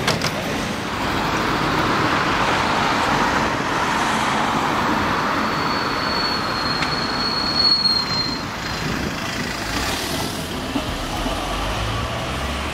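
Street traffic noise: a vehicle passes, swelling and fading over the first few seconds, and a thin high whine sounds for a couple of seconds around the middle.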